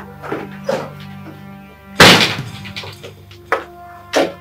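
Background film music with held, steady tones, broken about two seconds in by a single sudden loud impact with a short fading tail, and a smaller click near the end.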